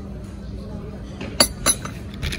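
A small glass set down on a ceramic saucer, making two sharp glass clinks about a second and a half in, a third of a second apart.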